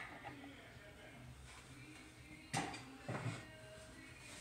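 Top cover of a Juki LK-1900 series sewing machine head being lifted off and set aside: quiet handling with a short knock about two and a half seconds in and a few lighter clatters just after.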